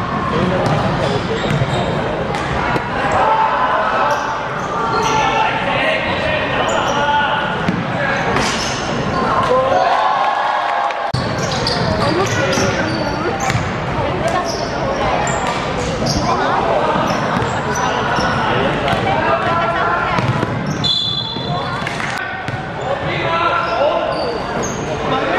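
A basketball bouncing on a hardwood court, with sharp thuds scattered through, under steady shouting and chatter from players and onlookers echoing in an indoor sports hall.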